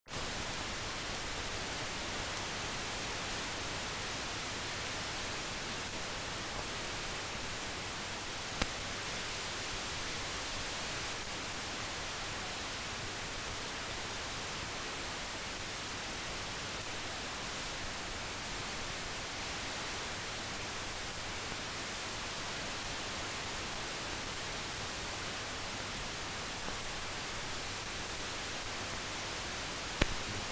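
Steady hiss of a mute archival film soundtrack with no recorded sound, broken by a single click about eight and a half seconds in.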